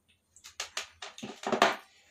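A quick run of clicks and knocks from handling the diffuser's plastic plug, cord and parts, the loudest about a second and a half in.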